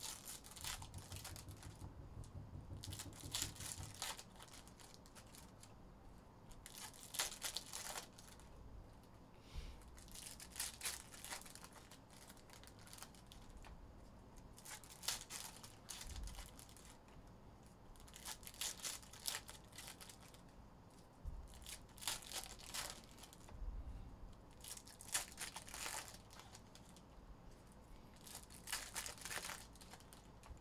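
Foil wrappers of Topps Chrome trading-card packs being torn open one after another: a short crinkling rip every three or four seconds, with faint rustling between.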